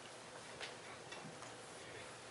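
A few faint, scattered light clicks and taps of communion serving plates being handled and passed along the pews, over a steady low hiss of room noise.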